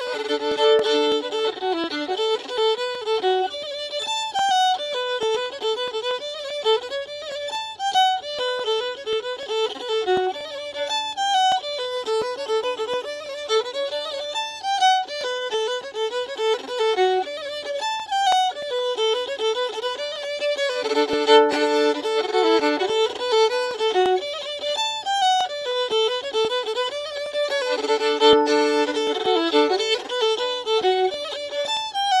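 Solo fiddle playing an Irish slide, a lively, fast-moving melody bowed continuously, with a few stretches where two strings sound together.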